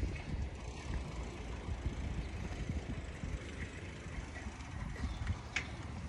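Steady low rumble with faint rattling, the noise of moving along a paved path outdoors, with some wind on the phone's microphone.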